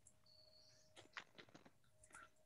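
Near silence, with a few faint clicks about a second in.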